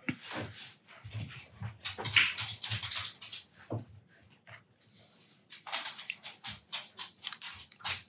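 A pet dog making small noises in the room, with scratchy sounds throughout and a thin high whine about halfway through. A gold gel pen scratches on paper in between.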